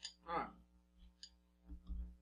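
A few faint, light clicks of spoons and bowls being handled and set down on a wire rack.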